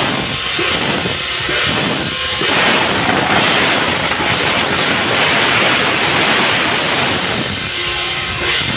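Temple-troupe percussion: gong and cymbals clashing loudly, at first in separate strokes, then from about two and a half seconds in as a continuous dense crash.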